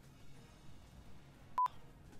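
A single short electronic beep, a pure tone of about 1 kHz lasting about a tenth of a second, about one and a half seconds in. Faint background sound lies around it.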